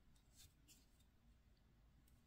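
Near silence: faint rustling of yarn and fingers handling crochet work, with two soft brief rustles in the first second.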